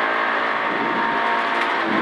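Engine of a Peugeot 106 N2 rally car running hard, heard from inside the cabin, its pitch held fairly even.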